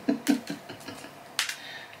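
Shell of a hard-boiled black egg (kurotamago) being cracked and picked off by fingers: a few small crackles and one sharper crack about one and a half seconds in.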